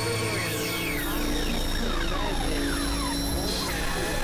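Dense layered mix of several experimental electronic tracks playing at once: a low drone and held steady tones, crossed by many repeated falling pitch sweeps.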